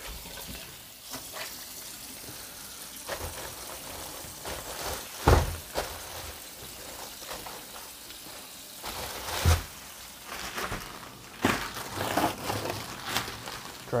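Cleaning and handling noises at a freezer: faint rubbing and scraping with scattered clicks, and two dull knocks about five and nine and a half seconds in.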